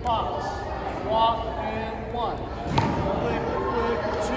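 Voices talking in a large, echoing gym hall, with one sharp thud a little under three seconds in.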